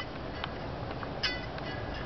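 Music playing faintly through an iPod touch's small speaker, with a couple of short high notes over a steady outdoor hiss.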